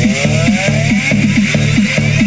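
Electronic dance remix played loud through a Lo-D AX-M7 mini hi-fi system and its speakers: a fast, pulsing bass line of about four or five hits a second, with synth sweeps rising in pitch.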